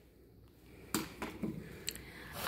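Packaged items being handled in a cardboard shipping box: near quiet at first, then a few short clicks and knocks with light rustling from about a second in.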